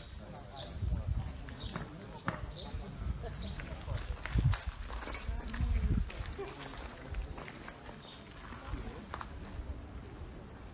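Outdoor ambience with indistinct voices in the background and irregular low thuds and short clicks, the loudest thuds about a second, four and a half seconds and six seconds in.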